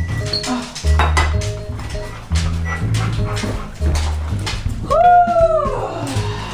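Background music with a steady, repeating bass line. About five seconds in, a dog gives one short whine that rises and then falls in pitch.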